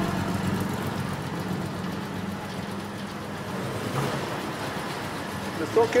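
Steady low rumble of a car engine running, starting suddenly and holding even throughout.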